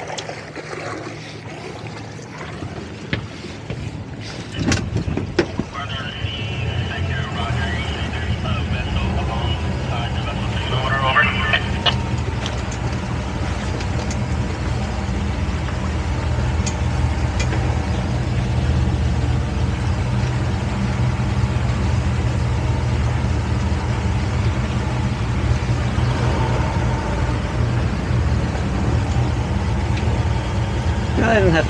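Suzuki outboard motor on a towboat running at low speed while the boat manoeuvres in shallow water. Its low hum comes up about five seconds in, after a few short knocks, and then runs steadily.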